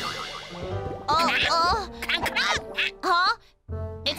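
Cartoon background music with a high, cartoonish voice sliding up and down in short repeated phrases from about a second in. The tail of a crash fades out at the start.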